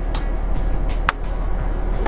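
Sharp clicks just after an air rifle fires a steel BB: a short crack right at the start and another sharp click about a second in. Steady background music plays underneath.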